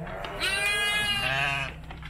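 A week-old premature Texel lamb bleating once, a single long call of about a second and a half starting about half a second in, while being bottle-fed.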